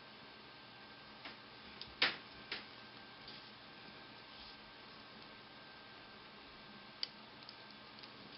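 A few light clicks of bamboo double-pointed knitting needles knocking together as a stitch is picked up and knit, the sharpest about two seconds in, over a faint steady hiss.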